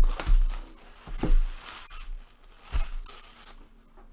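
Plastic shrink-wrap being torn and crinkled off a sealed trading-card box, in three rustling bursts: at the start, about a second in, and near three seconds in, then fading.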